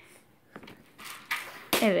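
A quiet pause holding a single faint click about half a second in and a soft hiss around one second. A woman starts speaking just before the end.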